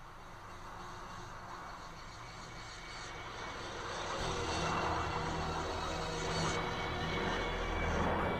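A low rumbling drone with a rushing hiss, swelling steadily louder like an approaching aircraft engine; the hiss brightens about three seconds in and the rumble deepens soon after.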